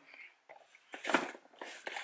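Soft rustling and light knocks of small cardboard boxes being handled and set down on a fabric car seat, with a brief louder rustle about a second in.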